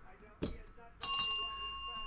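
A chrome desk service bell struck once, about a second in, ringing on with a clear, steady high tone. It marks a big hit.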